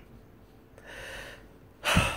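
A man's breathing: a soft breath drawn in, then a short, sharp, louder burst of breath near the end.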